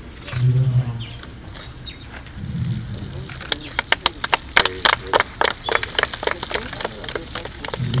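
Scattered hand claps from a small group, starting about halfway through and going on irregularly for several seconds. Murmured voices come before them.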